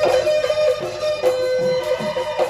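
Live Assamese Bihu music: a reedy wind melody held on long, stepping notes, typical of the pepa buffalo-horn pipe, over dhol drum strokes.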